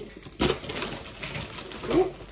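Plastic drink bottles being gathered up by hand: a sharp knock about half a second in, then crinkling and rustling of plastic. Near the end there is a short, low hum of a voice.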